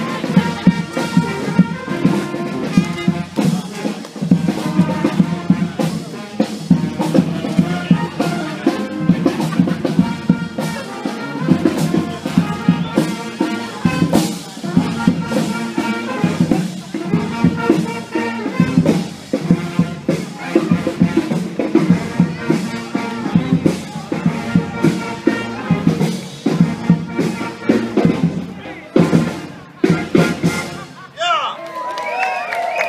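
Music with a steady drum beat.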